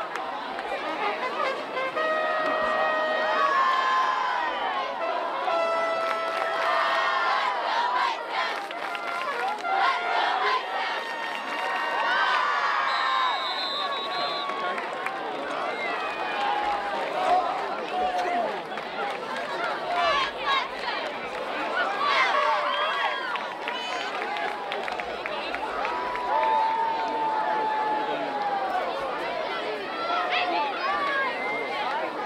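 Crowd noise at a high school football game: many overlapping voices shouting and chattering from the sidelines and stands, with a few long held tones in the first several seconds.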